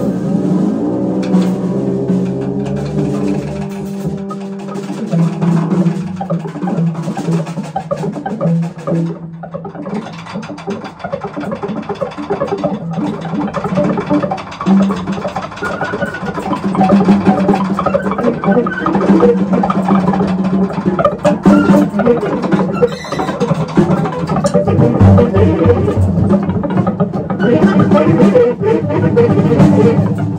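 Free-improvised jazz played live by a trio of tenor saxophone, guitar and drum kit: dense, with held low notes and busy percussion. It eases a little in the middle and builds louder again in the second half.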